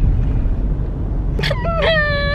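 Low, steady rumble of a car's cabin. About a second and a half in, a girl breaks into a long, high-pitched crying wail, put on as a joke.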